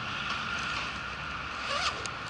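Low steady background hiss with a brief rustle and a few small clicks near the end, from hands handling the motorcycle's controls; the engine is not running.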